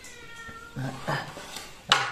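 Hand-forged steel knife blades handled on a workshop floor, ending in one sharp metallic clink just before the end, the loudest sound. A man's voice is heard briefly about halfway through.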